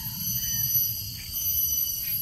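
Insects buzzing steadily in several high-pitched tones, with a low rumble underneath.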